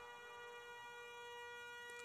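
Faint background music: one steady, held drone note.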